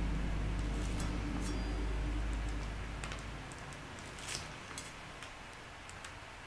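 Faint handling of a plastic piping bag as buttercream is piped: a few soft crinkles and ticks. Under it a low steady hum fades out a little past halfway.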